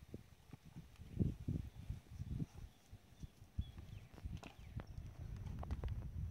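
Irregular soft knocks and thumps, with a few sharper clicks, of hands working potting soil close to the microphone: pressing it into a small plastic pot and reaching into a bag of soil.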